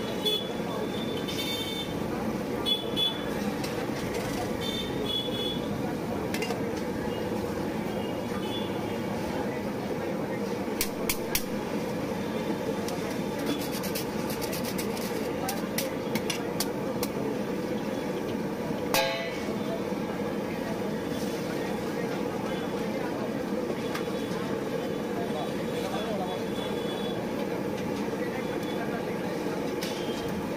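Busy street-stall ambience: a steady hum of traffic and indistinct background voices, with scattered sharp metal clicks of a spatula against a dosa griddle, the loudest about 19 seconds in.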